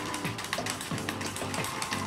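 Hair-colour brush stirring dye in a metal mixing bowl: a fast run of small clicks and scrapes as the bristles and handle knock the bowl, over background music.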